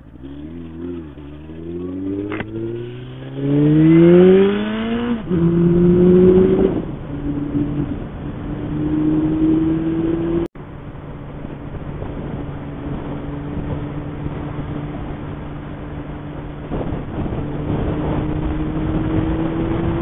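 Motorcycle engine accelerating hard: its pitch climbs steadily for about five seconds, drops twice in quick succession as it shifts up, then settles into a steady drone that creeps higher as the bike cruises at highway speed, with wind rush throughout. The sound cuts out for an instant about ten seconds in.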